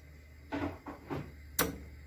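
A few light knocks and one sharp click of a spoon against a metal cooking pot as bulgur is spooned into the simmering aşure.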